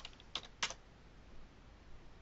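Two keystrokes on a computer keyboard, about a third of a second apart within the first second, typing a web address.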